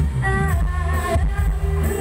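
Loud music played through a mobile sound-system truck's loudspeakers, with a heavy, constant bass under a melody.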